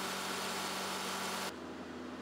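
Experimental Volkswagen Polo car engine, converted to run on hydrogen, running steadily on a test bench: an even hum with a few fixed tones. About one and a half seconds in, it gives way abruptly to a quieter, lower hum.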